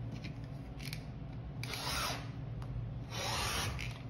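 Rotary cutter blade rolling through cotton fabric against an acrylic ruler on a cutting mat, two long cutting strokes about a second apart, the second a little longer.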